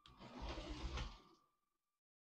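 Battery-powered Lego City 60337 train's Powered Up motor running with a faint steady high whine, and its plastic wheels rolling on plastic track, as it takes a run-up at a ramp too steep for it. The rolling noise fades out about halfway through.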